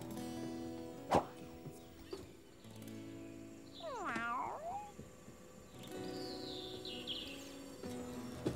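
A cartoon cat gives one meow about four seconds in, over soft background music.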